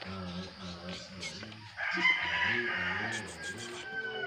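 A rooster crowing once, a long call starting about two seconds in, over background music with held, gliding notes.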